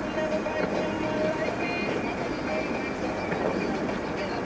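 Steady cabin noise of a car driving on a snow-covered street, with a voice or sound from a radio running under it.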